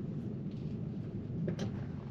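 Low, steady road and tyre noise heard inside the cabin of a Tesla electric car rolling slowly, with no engine sound. A faint click comes about one and a half seconds in.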